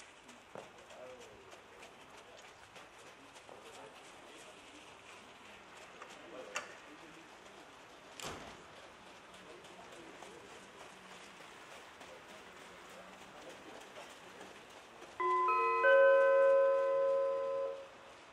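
Faint outdoor background with a couple of clicks, then near the end a loud electronic chime of two or three notes, rung in quick succession and held for about two and a half seconds: a public-address attention signal ahead of an announcement.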